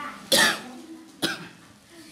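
A man coughing close to a handheld microphone: one loud cough, then a second, shorter one about a second later.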